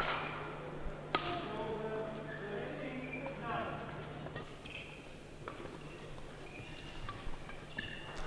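Badminton racket strikes on a shuttlecock during a rally: a few sharp, isolated hits spaced a second or more apart, with faint distant voices underneath.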